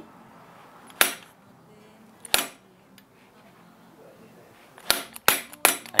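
Hand hammer striking a small steel chisel to carve openwork into a forged spur pihuelo clamped in a vise: sharp single taps, one about a second in, another just past two seconds, then three quick strikes near the end.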